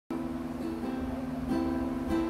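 Ukulele being played, ringing chords that change about three times.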